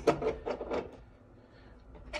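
A few light knocks and taps in the first second as a small plastic-housed micro switch with a metal bracket is handled and set down on a workbench.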